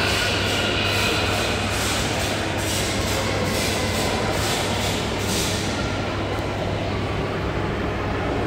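Steady rumbling background noise of a large indoor hall with a constant low hum, with faint, evenly spaced soft taps through the first half or so.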